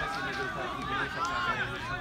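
Spectators in the stands chatting, several voices overlapping into a steady babble.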